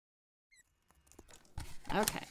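Dead silence for the first half second, then small scissors snipping cardstock and the card being handled: scattered clicks and rustles, loudest near the end.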